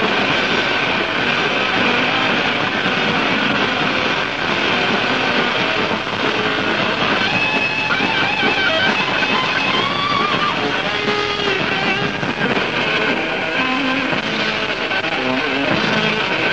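Heavy metal band playing live, with distorted electric guitar, bass and drums in an instrumental passage without vocals. A high electric guitar lead line wavers and bends in pitch through the middle of the passage.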